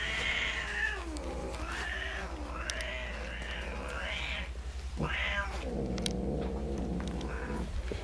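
Newborn kittens and their mother crying: several high, wavering calls in the first half, a quick rising-and-falling cry about five seconds in, then a lower drawn-out call near the end.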